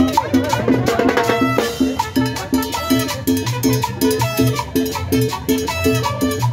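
Live street band of brass, saxophones, snare drums and cymbals playing an upbeat Latin dance tune, with a steady repeating bass line and brass riffs over the drumming.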